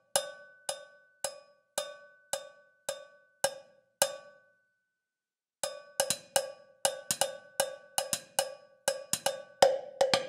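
Sampled cowbells from a virtual instrument, two or three bells layered so that each key strikes them together. They are struck about twice a second for four seconds, then after a short pause in a faster, busier pattern.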